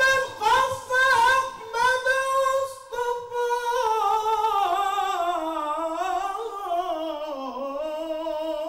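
A male Egyptian mubtahil chanting a religious ibtihal solo with no instruments: held notes in short phrases first, then a long wavering, ornamented line that sinks lower near the end.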